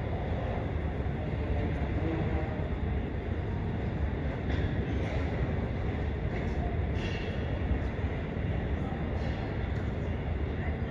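Steady low rumble inside a parked airliner's cabin at the gate, with a few faint knocks around the middle.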